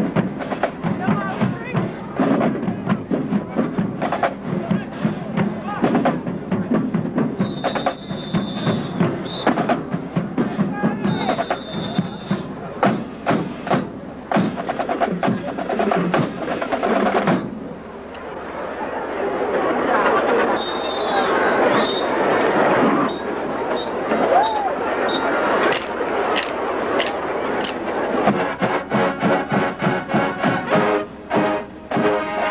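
HBCU marching band drumline playing a fast percussion cadence of snares and bass drums, with two high held tones over it about a third of the way in. After about 17 seconds the drumming breaks off and a louder, dense swell of band and crowd noise builds, with the drums coming back in near the end.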